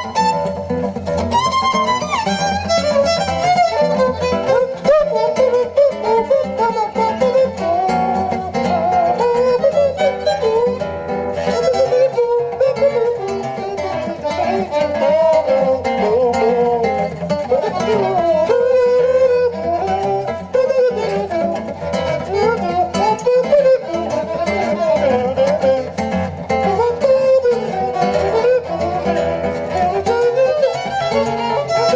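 Jazz violin playing a busy melodic line full of slides, over guitar accompaniment.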